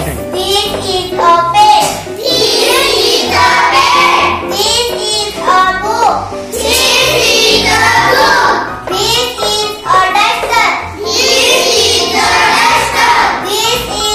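A young girl's voice reciting short sentences in a sing-song chant.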